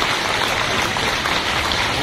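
Audience applauding steadily: a dense run of hand claps from a seated crowd in a large hall.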